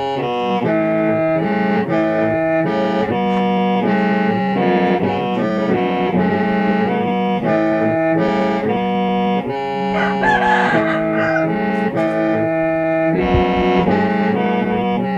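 Hmong qeej, a bamboo free-reed mouth organ, played solo: a steady low drone held under a melody of overlapping reed notes that change every fraction of a second.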